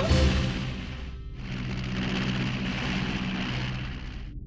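Cartoon background music with low sustained notes, under a sound-effect rush of noise that fades over the first second, then a steady hiss from about a second and a half in that cuts off suddenly at the end.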